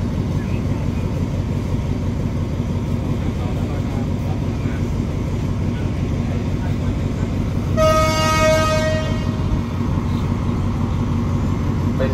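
Steady low rumble of the waiting train's diesel engine, then about eight seconds in one horn blast of about a second and a half from the locomotive: the departure signal answering the official's green flag.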